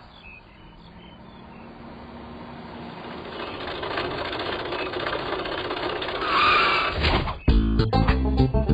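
A jeep approaching and driving past, its engine and road noise growing steadily louder to a peak. Near the end this is cut off abruptly by music with plucked guitar and bass.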